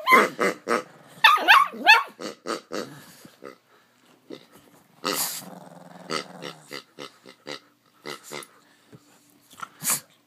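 A rubber pig toy being squeezed so that it oinks, and a pug growling and barking at it. The calls come thick in the first few seconds, then as shorter separate sounds through the rest.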